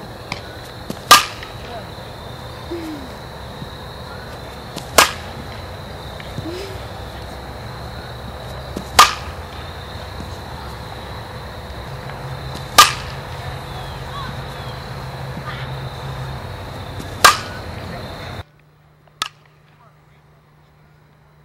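A softball bat striking the ball on five full swings, sharp cracks about four seconds apart, then a fainter hit after a cut near the end.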